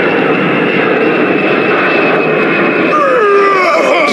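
A crowd cheering a slam dunk: a loud, steady wall of voices, with a few falling cries standing out near the end.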